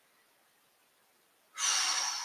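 Near silence, then about a second and a half in a woman breathes out deeply, a loud breathy rush that starts suddenly and fades slowly.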